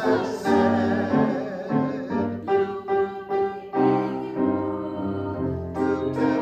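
A hymn sung in call-and-response form, a cantor's phrases echoed by voices, with piano accompaniment.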